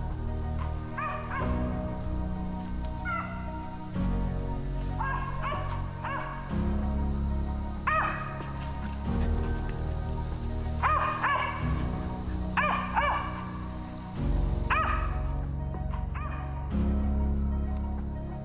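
Mountain cur barking at a tree where a squirrel is treed: about a dozen short, uneven barks. Background music runs under them, with sustained chords that change every couple of seconds.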